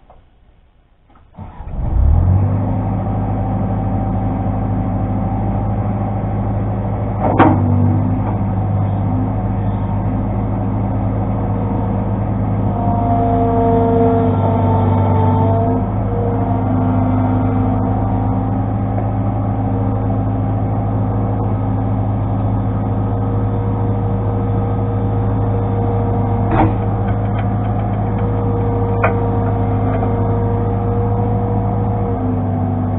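New Holland LX665 skid steer's engine starting about a second and a half in, then running steadily. A single sharp clank comes about seven seconds in, with lighter clicks near the end.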